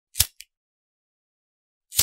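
Two sharp clicks about two seconds apart, the first followed closely by a smaller click, with dead silence between them.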